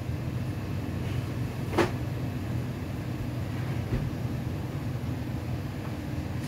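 Steady low hum of grocery-store refrigeration, with one sharp click a little under two seconds in.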